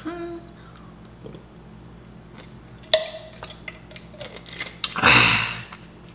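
A person downing a small bottled ginger shot: a few faint clicks and one sharper click about three seconds in, then a loud, harsh burst of breath about five seconds in, a reaction to the ginger's burn.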